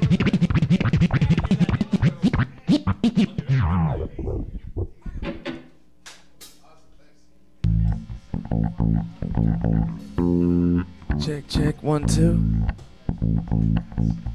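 Beatboxing into a microphone, rapid mouth clicks and scratch-like vocal sounds, for the first few seconds. After a short lull about six seconds in, a bass guitar and electric guitar play loose held low notes through the PA, a soundcheck.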